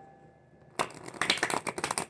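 A tarot deck being shuffled by hand: after a quiet moment, a rapid flutter of card edges snapping past each other begins almost a second in.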